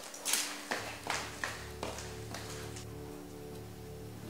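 Soft background music of sustained held chords, with about five quick sharp taps in the first two seconds.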